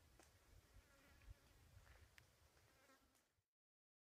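Near silence: faint outdoor ambience with a faint insect buzz, cutting off to total silence about three and a half seconds in.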